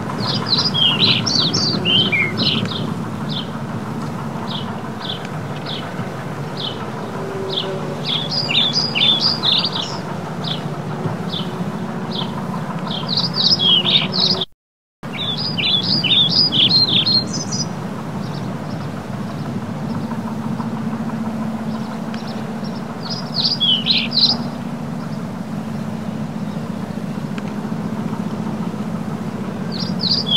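Small birds chirping in quick bursts of high, falling notes, several times over a steady low background rumble. The sound cuts out for a moment about halfway through.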